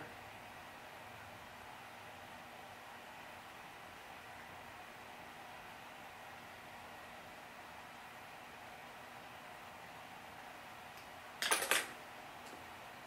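Steady faint hiss of room tone. Near the end comes a short, rattling burst of clicks about half a second long.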